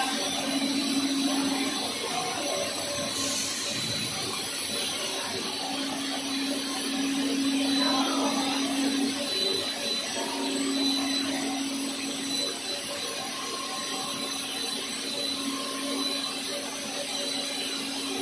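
HDPE pipe extrusion line running: a steady machinery drone with a low hum that drops out twice.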